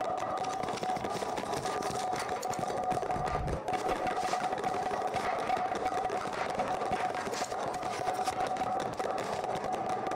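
A steady background drone holding one constant mid-pitched tone over a noisy hiss, with a short low rumble about three seconds in.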